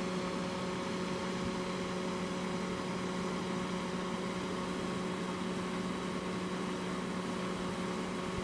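Steady, even hum of a swarm of Japanese honeybees clustered at the entrance of a bait hive as they move into it.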